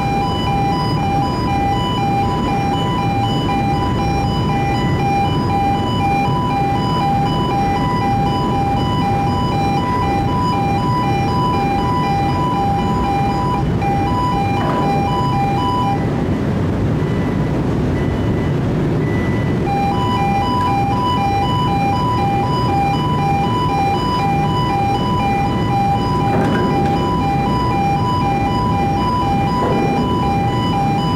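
A steady low rumble of ship's machinery, over which an electronic two-tone warning alarm beeps rapidly on a constant pitch. The alarm drops out for a few seconds a little past halfway, then starts again.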